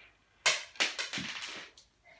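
A sharp knock about half a second in, a second lighter one shortly after, then a brief rustle: wooden chess pieces being handled and set down.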